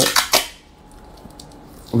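A few quick clicks and taps in the first half second from handling a roll of adhesive tape, followed by faint ticks and quiet room sound.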